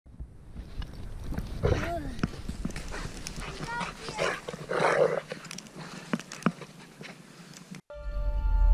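A dog playing in snow close to the microphone, with short voice sounds and a few rising whine-like chirps, over a low wind rumble on the microphone. The sound cuts off abruptly just before the end.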